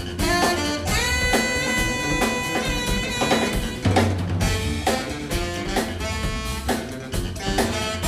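Live jazz band playing: saxophone holding one long note from about one second in to about three seconds, over grand piano, electric guitar and a drum kit keeping time.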